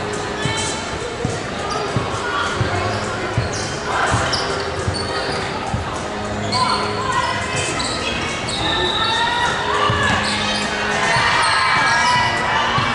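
Basketball being dribbled and bounced on a hardwood gym floor, with many short knocks echoing in a large hall. Short high squeaks of basketball shoes on the court come through among the bounces.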